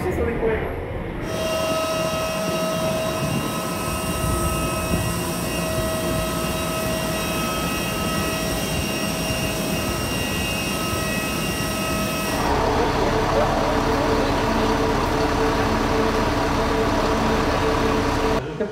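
Steady whine of a jet airliner standing on the apron: several high, even tones over a rushing noise. About twelve seconds in, it gives way to a lower, steady engine hum from an idling coach bus.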